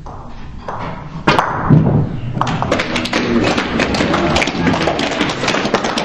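Russian pyramid billiards shot: a sharp clack of the cue on the ball about a second in, followed by heavy ball-on-ball knocks. A dense patter of clapping and voices then fills the rest and stops abruptly.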